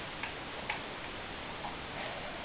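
A few faint, unevenly spaced clicks over a steady hiss.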